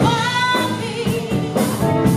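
Live blues band: a woman sings a long, wavering note over electric guitar, electric bass and a drum kit.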